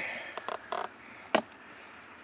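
A few light plastic clicks and knocks as a Bluetooth OBD-II scan adapter is handled and pushed into the car's diagnostic port under the dash, the sharpest click about a second and a half in.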